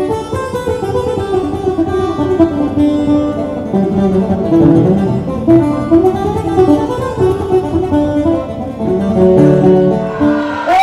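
Puerto Rican cuatro played, a melody of quick plucked notes on its doubled steel strings.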